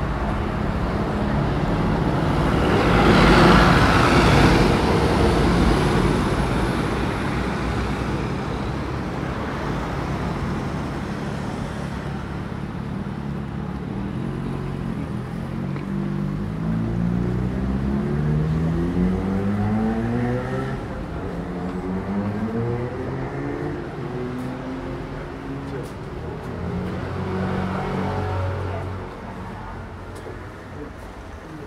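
Street traffic: a car passes close by a few seconds in, the loudest moment, then lower steady traffic noise goes on.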